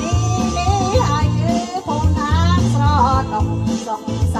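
A Khmer song: a voice singing a wavering melody over a steady, repeating bass beat.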